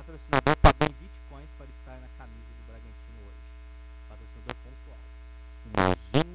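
Steady electrical mains hum with a stack of its overtones, running under the studio audio. Several very short, loud bursts cut in just after the start and again near the end, with faint voices in the first couple of seconds.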